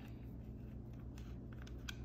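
A few faint clicks and handling noise as the air hose's threaded tip is unscrewed from the outlet of a cordless portable tire inflator, over a low steady hum.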